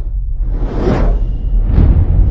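Logo-ident music with whoosh sound effects: two whooshes about a second apart, each swelling and fading, over a deep, steady bass.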